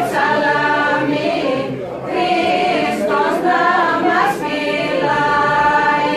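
A mixed group of voices singing Thracian Christmas carols (kalanta) in unison, in long held phrases, with a wooden folk pipe playing along.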